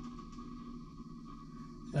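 A faint steady hum with a thin, constant high tone running under it.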